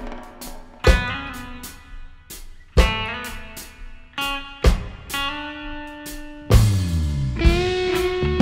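Instrumental passage of a reggae tune led by guitar: about every two seconds a new chord or run of notes starts sharply, rings out and fades.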